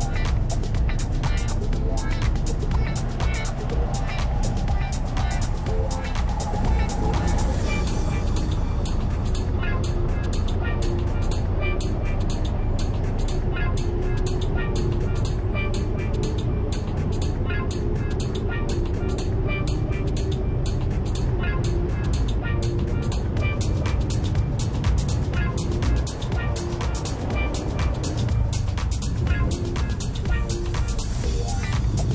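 Background music with a steady beat, laid over the low steady noise of road traffic.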